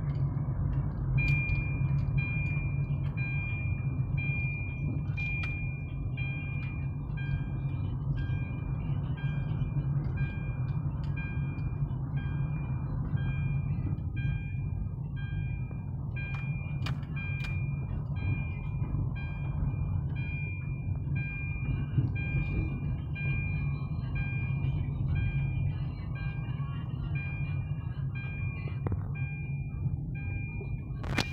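Car moving slowly, with a steady low engine and road rumble heard from inside the cabin. From about a second in, an electronic in-car warning beep repeats evenly, a little faster than once a second. There are a few light knocks.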